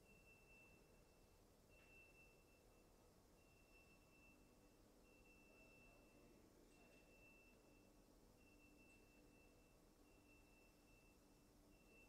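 Near silence: faint room tone, with a faint high tone pulsing on and off, each pulse about a second long and coming every second and a half or so.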